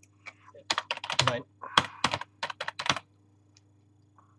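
Typing on a computer keyboard: a quick, irregular run of keystroke clicks that stops about three seconds in, with a short spoken 'Nein' among them.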